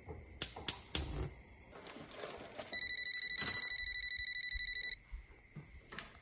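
Gas cooktop igniter clicking a few times, then a corded landline telephone ringing once with a fast electronic trill lasting about two seconds.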